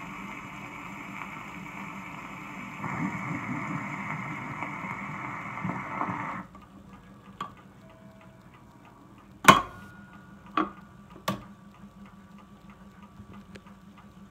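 Surface hiss of a shellac 78 rpm record running in its run-out groove after the music has ended. About six seconds in, the hiss cuts off as the RCA Victor 55U changer lifts the tonearm and swings it back to rest. Three loud clunks from the changer mechanism follow, with faint regular ticking.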